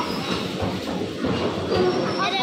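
Electric bumper cars running around a concrete rink, a steady rolling rumble and clatter from their wheels and from the trolley poles that draw power from the overhead wire grid.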